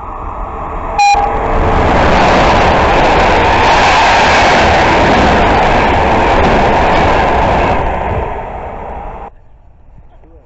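Passenger train approaching and passing at speed on an electrified main line, with one short horn blast about a second in. Then the loud rush and rumble of the carriages going by, easing off near the end and cut off suddenly just after nine seconds.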